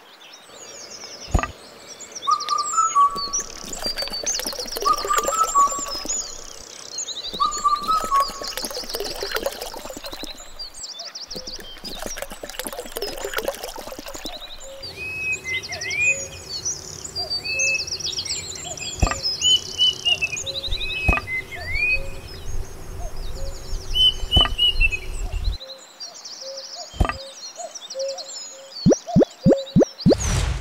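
Several birds chirping and trilling, over scraping as wet cement is spread on miniature brickwork and sharp clicks as small parts are set down by hand.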